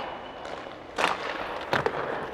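Two sharp knocks, one about a second in and a weaker one near the end, over a steady rink hiss.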